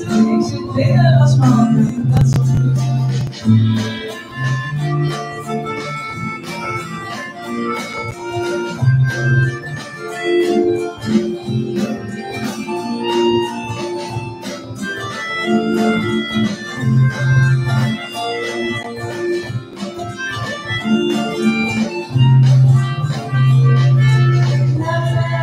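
A melodica plays a held, reedy melody over acoustic guitar accompaniment in an instrumental break of a live song.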